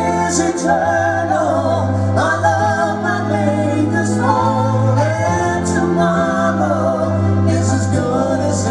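Live progressive-rock band playing, with a male and a female singer singing together over long, held bass notes.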